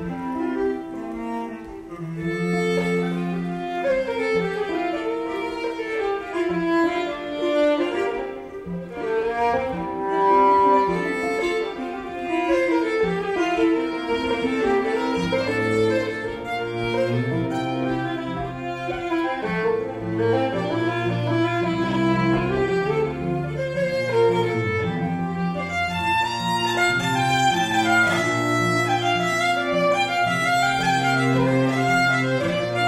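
Two fiddles, cello and acoustic guitar playing a fiddle tune together live. The low notes fill out from about halfway through.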